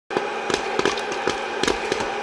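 Popcorn popping in a hot air popcorn popper: irregular sharp pops, several a second, over the steady whir of the popper's fan.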